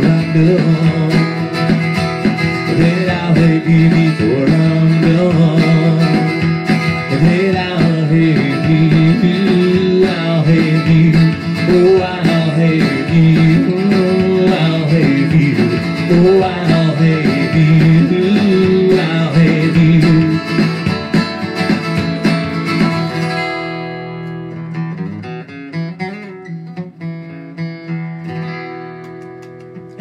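Steel-string acoustic guitar strummed steadily through the close of a country song. About three quarters of the way through, the strumming stops and the last chords ring out and fade.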